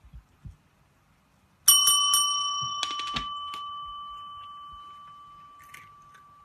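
Chrome desk service bell rung by a cat's paw: three quick rings about a second and a half in, then a few duller taps. After that the bell's tone rings on, fading slowly.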